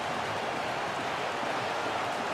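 Steady, even background hiss of a football broadcast's stadium sound, with no distinct kicks, whistles or shouts.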